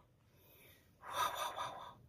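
A person's breathy gasp or sharp breath, lasting just under a second and starting about a second in, after a near-silent pause.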